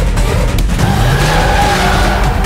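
Car engine revving with tyres squealing, a film car-chase sound effect; the squeal comes in a little under a second in, over a rising engine note.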